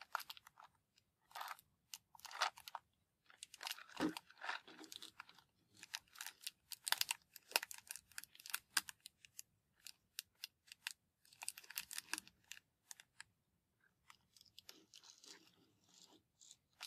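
Fingernails tapping and scratching on a cardboard matchbox in quick, irregular crisp clicks and scrapes, with a duller knock about four seconds in.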